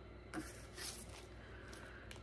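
Quiet room with a couple of faint, short rustles from handling plastic-wrapped wax melts and the box they came in.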